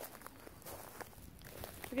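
Faint footsteps on wood-chip mulch: a few soft, irregular crunches and clicks.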